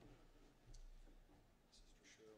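Near silence in a church, with faint murmured speech and a single soft click about three quarters of a second in.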